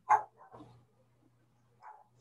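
A dog barking: one sharp bark at the start, then two fainter, shorter ones.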